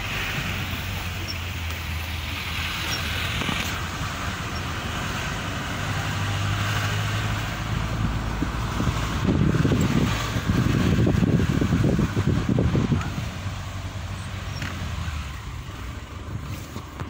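Tata Sumo passenger jeep driving, heard from inside the cabin: steady engine and road noise with a low hum. The low rumble swells louder for a few seconds past the middle.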